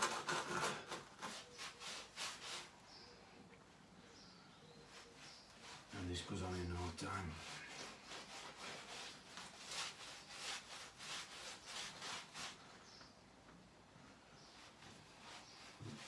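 A brush scrubbing over bare brickwork in quick back-and-forth strokes as a damp-proofing liquid is painted onto the bricks, in two spells: one at the start and another in the middle. A short low voice sound comes about six seconds in.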